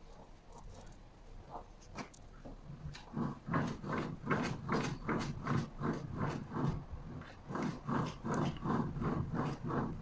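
A man breathing hard or grunting in an even rhythm, about three strained breaths a second, from the effort of spinning a homemade generator's shaft by hand. The breaths begin about three seconds in and grow louder.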